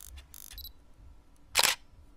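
Camera shutter sound effect: a few faint short clicks in the first half, then one loud shutter click about a second and a half in.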